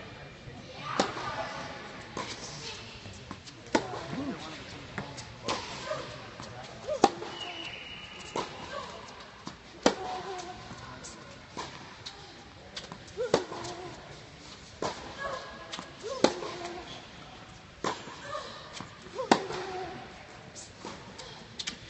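Tennis rally: a ball struck back and forth by racquets, sharp pops about every one and a half seconds, with faint voices between them.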